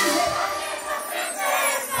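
A crowd of dancers shouting and cheering together as the band's music drops out, leaving their voices the loudest sound.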